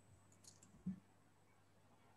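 Near silence: room tone, with one brief soft sound just before a second in.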